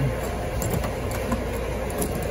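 A steady low rumble of background machinery, with a few faint clicks as a key is worked in the trunk lock of a Chrysler Stratus.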